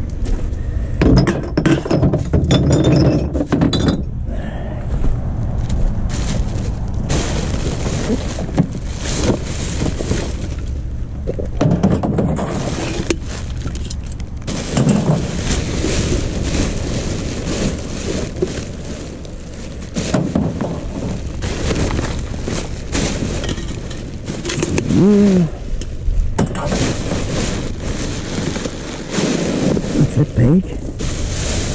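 Rummaging through wheelie bins: plastic rubbish bags rustling and crinkling, with glass bottles clinking and knocking together in many irregular strokes. A short pitched sound rises and falls about 25 seconds in.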